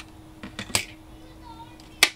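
Light handling of a thin metal cutting die and cut paper on a die-cut machine's cutting plate: a couple of small clicks and a short rustle about three-quarters of a second in, otherwise quiet.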